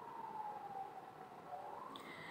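A faint, distant siren-like wail: one thin tone that slowly falls in pitch, then rises again near the end.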